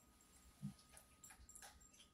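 Near silence: room tone, with one faint, short low sound about a third of the way in and a couple of faint ticks.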